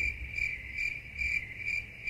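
Cricket chirping sound effect: a steady high chirp pulsing evenly about twice a second, the comic "crickets" gag laid over an awkward pause.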